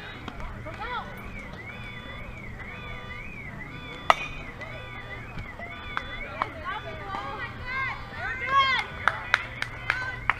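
A single sharp crack of a softball bat hitting the ball about four seconds in. Players and spectators then shout, with a few sharp claps near the end.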